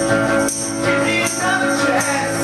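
A live rock band playing loudly, with electric guitar over a steady percussive beat.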